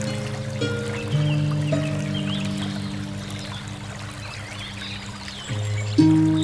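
Solo harp playing a slow hymn: a few plucked notes in the first two seconds ring on and die away, then new low notes sound near the end. Behind it runs the steady rush of a river.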